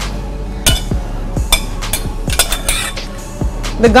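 Background music with a steady deep beat, over which a metal spoon clinks a few times against a stainless steel bowl as vegetable sauce is spooned out, several clinks bunched together about two and a half seconds in.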